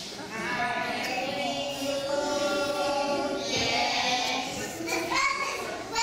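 A group of young children singing together, holding long drawn-out notes.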